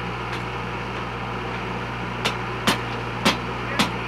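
Steel pipe jack stands being kicked and knocked to shift a pipe sweep during fit-up: four sharp knocks about half a second apart in the second half, over a steady low engine hum.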